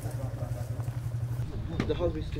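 A steady low engine hum, like a motor idling, under the murmur of people talking; a short knock and a voice come near the end.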